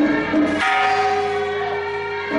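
Bell-like ringing tones in ceremonial music. A short lower note comes first, then long steady notes held from about half a second in.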